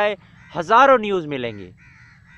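A man's drawn-out voiced hesitation sound, rising and then falling in pitch, followed near the end by a crow cawing faintly in the distance.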